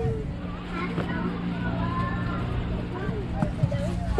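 Faint voices of people talking in the background over a steady low mechanical hum.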